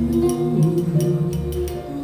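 Music with long held notes over a bass line and a quick, light ticking in the high range. There is no singing in this stretch.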